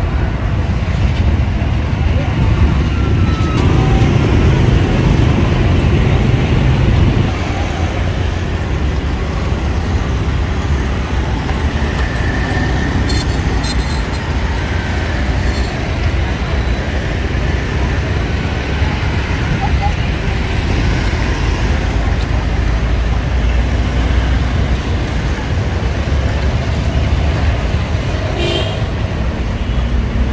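Busy road traffic, mostly motorbikes and scooters, with their engines and tyres making a steady noise that is louder for the first seven seconds or so. A few brief sharp clicks come about halfway through.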